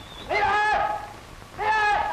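A high voice calling out a name twice in long, drawn-out calls, each held steady for about half a second: "Mei-lan…".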